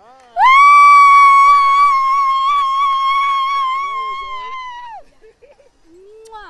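A person's long, high-pitched scream of excitement, held for about four and a half seconds, swooping up at the start and dropping off at the end.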